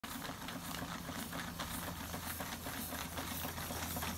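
Antique Carette and Schoenner toy live-steam vertical engines running together under steam, giving a rapid, continuous mechanical ticking and clatter over a steady low hum.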